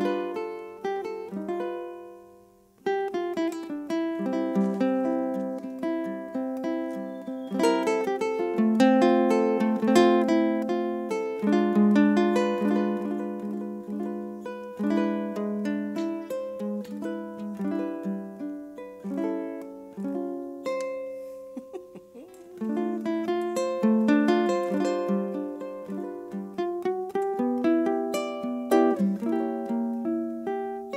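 Solo KoAloha ukulele playing an instrumental tune, a plucked melody over chords, with a brief pause about two and a half seconds in.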